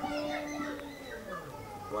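Quiet indistinct voices in the background, children's voices among them; one voice holds a steady note through the first second.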